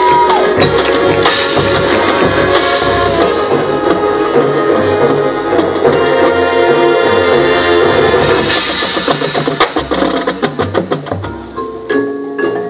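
High school marching band playing its show: sustained wind chords over drums, with two bright crashes, about a second in and again past the middle, then a run of sharp drum strokes near the end.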